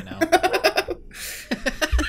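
Two men laughing together: a run of quick laughs, a short pause, then more laughter near the end.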